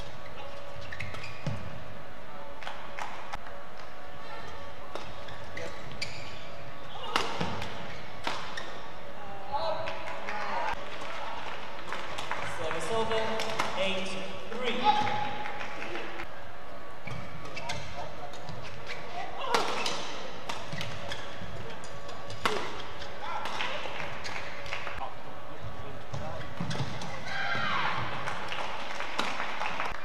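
Badminton rallies: rackets hitting the shuttlecock in sharp smacks at irregular intervals, the loudest about halfway through, over a steady background of voices and music.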